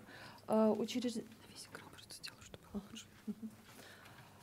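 A woman says one short word about half a second in, then a pause filled with faint whispering and a few soft clicks.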